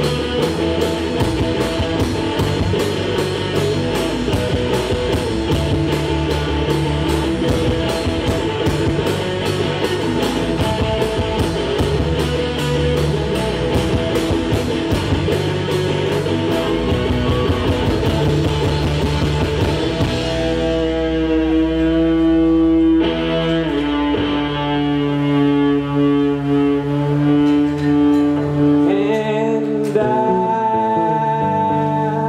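Live rock band playing an instrumental passage: electric guitar and electric bass over a drum kit with fast, steady cymbal strokes. About twenty seconds in, the drums drop out and long held guitar and bass notes ring on.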